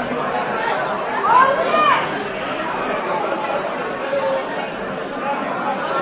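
Spectators chattering, many voices overlapping, with one voice calling out louder, its pitch rising and falling, between about one and two seconds in.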